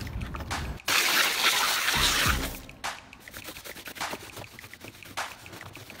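Water spraying from a garden hose nozzle into a plastic wading pool, starting suddenly about a second in and stopping after about a second and a half, followed by quieter dripping and trickling.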